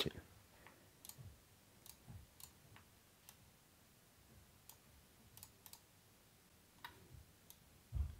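Faint computer mouse and keyboard clicks, scattered irregularly over several seconds against near silence, with a slightly louder click about seven seconds in.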